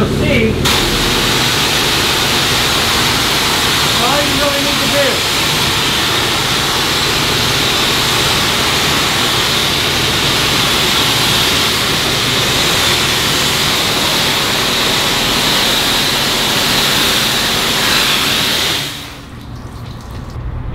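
Car-wash spray wand rinsing a fabric convertible top: a steady hiss of water spray hitting the canvas. It starts about half a second in and stops just before the end.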